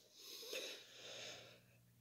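Near silence, with two faint breaths from the reader.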